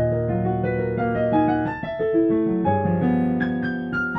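Solo piano music played on a digital piano: held low bass notes under moving chords and a melody, with a new low chord struck about two-thirds of the way through.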